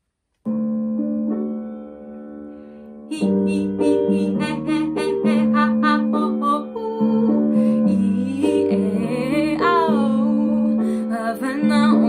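A woman sings a vocal warm-up exercise over piano accompaniment. A held piano chord starts about half a second in. From about three seconds she sings a string of short, detached notes and then quick runs of notes sliding up and down.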